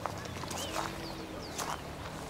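Footsteps on dry grass and brush of a hillside, about three steps, with short high chirps sounding behind them.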